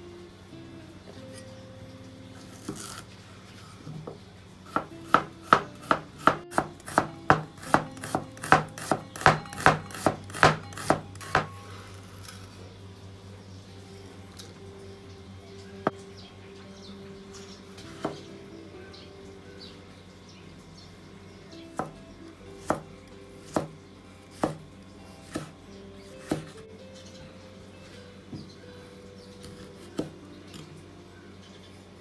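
Cleaver-style kitchen knife chopping an onion on a bamboo cutting board: a run of about seventeen quick knocks, about three a second. Then a handful of single cuts a second or two apart.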